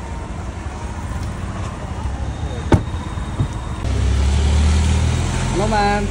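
A car door shutting with one sharp slam about three seconds in, over steady street traffic rumble that gets louder and deeper shortly after.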